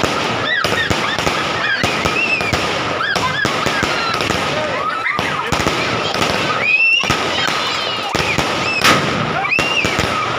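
Aerial fireworks going off in a continuous barrage, a rapid, uneven run of bangs and crackles from bursting shells, with high rising and falling tones over them.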